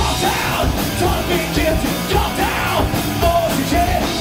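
Hardcore punk band playing a fast, loud song, with the singer yelling over guitar and drums.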